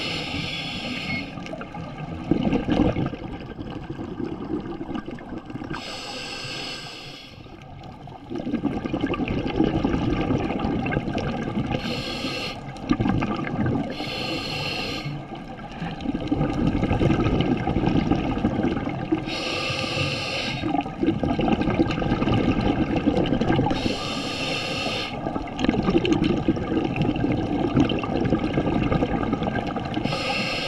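Scuba diver breathing through a regulator underwater: a short hiss of inhaled air every four to six seconds, each followed by a longer rumbling rush of exhaled bubbles.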